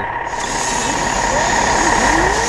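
Street traffic noise close up, with a truck's engine running nearby, heard as a loud steady rush with a faint steady whine.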